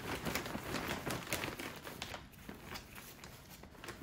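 Plastic bag of Miracle-Gro potting mix crinkling as soil is poured from it into a pot. The crackling thins out about halfway through.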